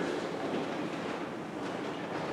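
Steady room noise of a large hall: an even, featureless hiss and rumble with no speech, during a pause in a lecture.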